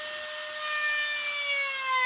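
Handheld rotary carving tool running with a steady whine as its diamond pear-shaped bit grinds into the wood. From about halfway in, the whine sinks gradually in pitch as the bit bears into the cut and slows the motor.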